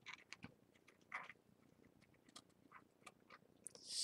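Near silence with faint, scattered small clicks and rustles of hands handling art materials.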